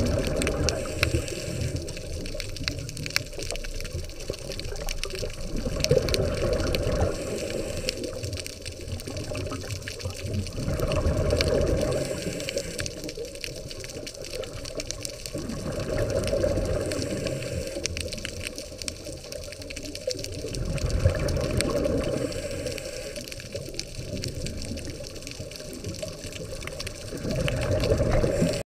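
Scuba diver's regulator breathing heard underwater through the camera housing: a muffled, continuous bubbling rumble that swells with each exhaled burst of bubbles, about every five seconds.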